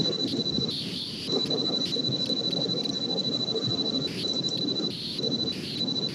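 A steady high-pitched tone that runs almost without a break, over low background noise.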